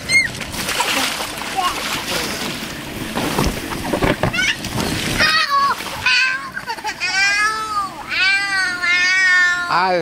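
Water splashing in an inflatable water-slide splash pool, then a young child crying in long, high, wavering wails through the last few seconds.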